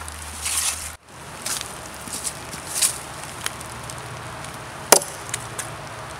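CRKT Ma-Chete, a 1075 carbon-steel machete, chopping at a nail in a wooden log: a series of blows, with one sharp strike near the end that is the loudest. The nail damages the edge, and the blade fails the nail test.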